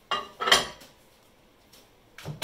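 A plate set down on a microwave oven's glass turntable: two short clattering knocks in the first half second, the second louder.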